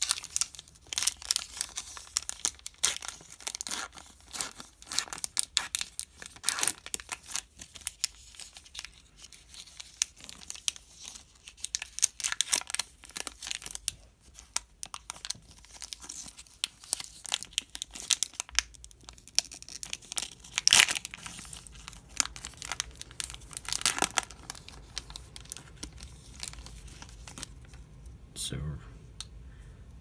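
Plastic wrapper of a 2016-17 Parkhurst hockey card pack crinkling and tearing as it is opened by hand. Dense crackling through the first half, then fewer, sharper crinkles.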